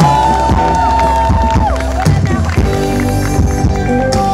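Live rock band playing loud through a concert sound system, electric guitars over bass and drums.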